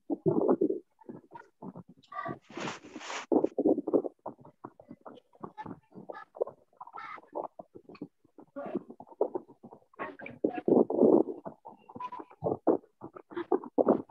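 A participant's voice over a video call breaking up into choppy, garbled fragments with frequent dropouts, the sign of a failing internet connection.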